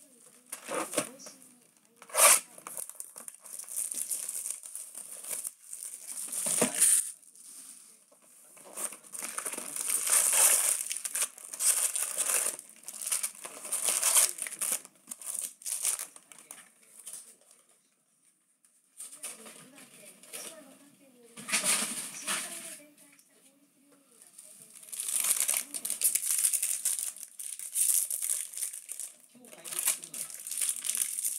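Foil-wrapped 2015 Bowman Draft baseball card packs crinkling in repeated bursts as they are handled and stacked, with a sharp click about two seconds in and a short pause just past the middle.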